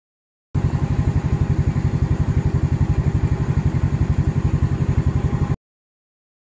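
Motorcycle engine idling, an even low pulse of about ten beats a second that starts abruptly about half a second in and cuts off suddenly near the end.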